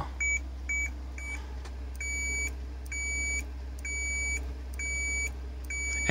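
Digital multimeter continuity beeper, with its hook-clip leads on a self-oscillating relay's contacts, beeping each time the contacts close. Three short beeps come first, then longer beeps of about half a second, roughly once a second, with gaps about as long: the relay oscillator's on and off times are nearly symmetrical. A steady low hum runs underneath.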